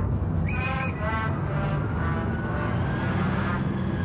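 A bus engine and street traffic running steadily, with background music playing over them.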